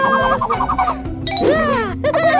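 High-pitched cartoon character voices: a quick, rapid-fire giggle in the first second, then wordless swooping vocal sounds, over children's background music.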